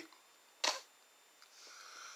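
A single brief click a little over half a second in, in an otherwise quiet pause, followed near the end by a faint hiss.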